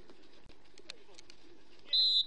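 Faint voices on a football pitch, then near the end a loud, steady referee's whistle blast begins, blown for a foul on a tackled player.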